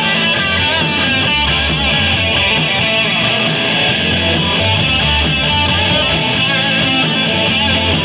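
Live rock band playing loud: electric guitars and bass guitar over a drum kit, its hits keeping a steady beat.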